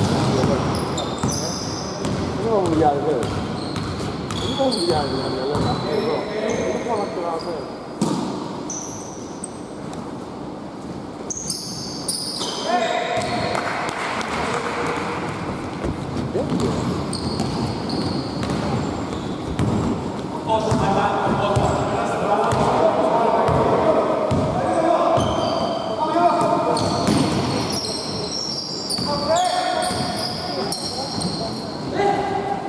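Basketball game on a hardwood court in a reverberant gym: the ball bouncing, short high sneaker squeaks on the floor, and players' voices calling out. The voices are strongest around the middle of the stretch and again later on.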